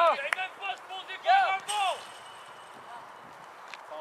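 Shouted calls by voices during the first two seconds, then a quieter outdoor background with a faint knock or two near the end.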